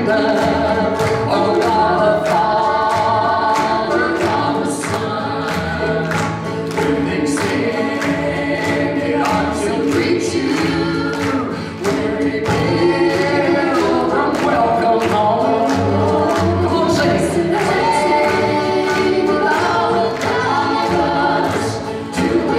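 Three voices singing a gospel song in harmony, accompanied by a strummed banjo, an acoustic guitar and a cello.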